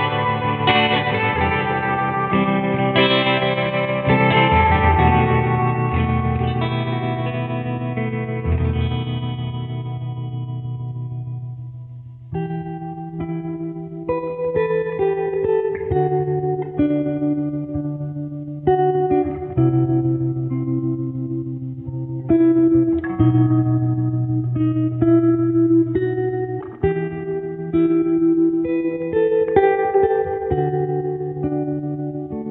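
Background music: held guitar chords with effects fade away over the first twelve seconds, then short plucked guitar notes play over a steady bass line.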